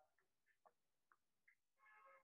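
Near silence, with a few faint ticks.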